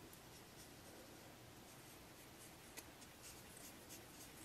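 Near silence with faint, soft rubbing of fingertips swiping powder eyeshadow from the pans of a palette, and one tiny click about three-quarters of the way through.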